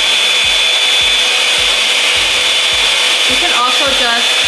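Revlon One Step Blowout Curls hot-air styling wand running, a steady blowing rush with a constant high whine from its motor.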